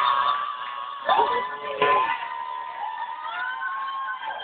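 Closing section of a karaoke performance of a hard-rock song: long held high notes that slide up into pitch and hold, starting again about a second and two seconds in.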